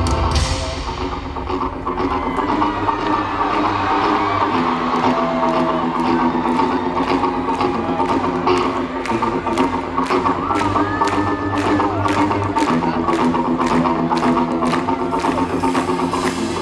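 Live band playing pop-rock: electric guitar and keyboards over a steady beat of sharp percussive clicks, about two to three a second.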